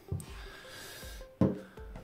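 Quiet background music, with a soft hiss in the first second and a short low sound about one and a half seconds in.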